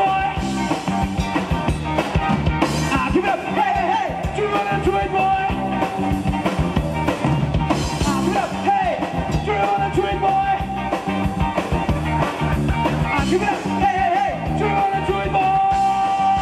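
Live rock band playing: electric bass, electric guitar and drum kit, with a male lead singer on vocals.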